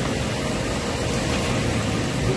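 Steady market background noise: a continuous low rumble and hiss with no single sound standing out.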